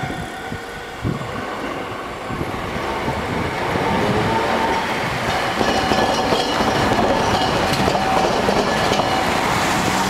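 An Iyotetsu streetcar approaches and rolls across the diamond crossing with the railway line. Its running rumble builds over the first few seconds and then holds loud, with wheel clatter over the crossing and a thin steady whine through the second half.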